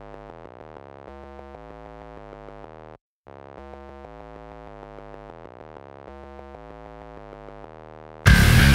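Quiet synthesizer intro: a melody of clean, sine-like tones stepping from note to note, cut by a brief break about three seconds in, after which the phrase starts again.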